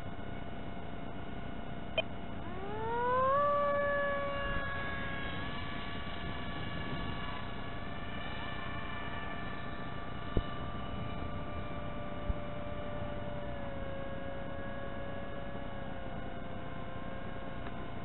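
Electric RC plane's brushless motor and two-blade propeller heard from the ground. About two and a half seconds in, the whine rises in pitch as the power comes back on after a glide. It then holds a steady tone and drops slightly lower near the end.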